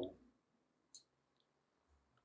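Near silence, with a single faint, short click about a second in.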